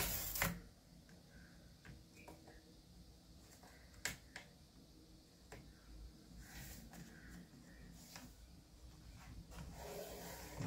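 Faint clicks and rubbing from fingers and a small tool pressing along the front-edge strip of a plastic laptop bottom panel to seat it. One sharper click comes about four seconds in.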